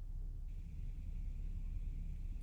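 Low steady rumble of a truck cab's background noise with the engine stopped and the air brakes held during a leak-down test. A faint steady high tone comes in about half a second in.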